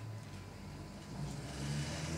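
Low rumble and handling noise from a handheld microphone as it is passed from one person to another.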